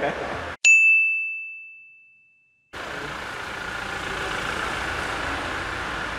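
A single bright bell-like ding, an edited-in sound effect, rings out over dead silence about half a second in and fades away over about two seconds. Steady workshop background noise follows.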